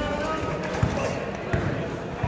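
Basketball bouncing on a court floor as it is dribbled, with short thuds, the loudest a little under a second in and another about a second and a half in.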